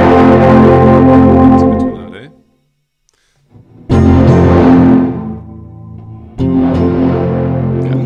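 Guitar chords strummed one at a time, each left to ring and fade: one ringing at the start, a second about four seconds in after a short silence, and a third near the end.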